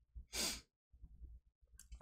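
A man's single short sigh, an exhale of frustration, about half a second in.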